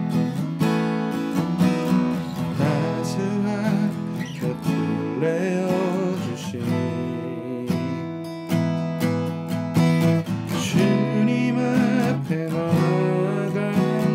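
Eastman E6D steel-string acoustic guitar strummed in a steady rhythm, with a man singing a worship song over it.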